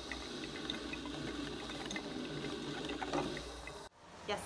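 Drip coffee maker brewing: water bubbling through the machine and coffee dripping into the glass carafe, a steady wash of small pops that cuts off suddenly near the end.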